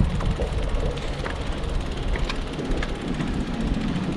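Steady low rumble of wind and movement on the camera's microphone as it is carried across the asphalt court, with a few faint light clicks.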